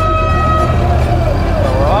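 A horn sounds for about a second on one steady tone over the low running of the Ramblin' Wreck's engine, a 1930 Ford Model A four-cylinder, pulling away in first gear. A wavering voice-like shout rises near the end.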